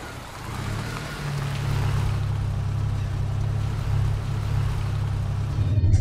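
A car engine running steadily: a low drone under a broad hiss, swelling about a second in and then holding level.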